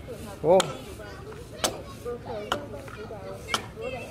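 A hand-held hewing blade chopping into a wooden log as it is hewed to shape: four sharp strikes about a second apart.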